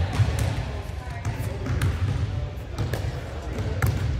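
Pickleball paddles striking a plastic pickleball during a rally in a large indoor court hall: a handful of sharp pops about a second apart. Players' voices and a low hum of the hall go on underneath.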